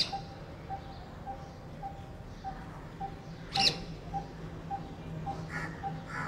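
Birds calling: a short, sharp, high squawk right at the start and another about three and a half seconds in, over a faint steady low hum.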